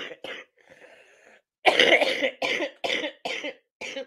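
A person laughing in a run of short, breathy bursts, about six in a row starting midway and growing shorter toward the end.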